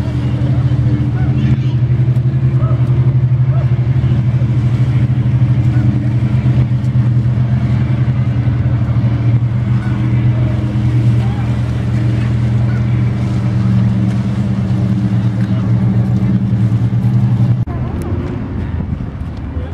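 An engine running steadily at one constant pitch, with a deep, even hum. It cuts off abruptly near the end.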